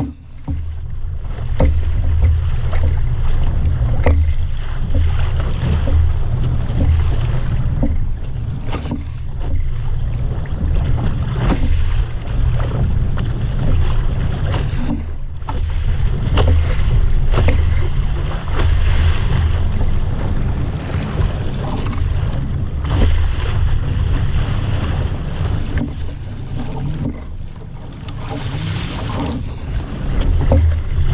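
Wind buffeting the microphone with a heavy, fluttering rumble as a small sailing dinghy moves through chop, with water rushing and splashing along the hull.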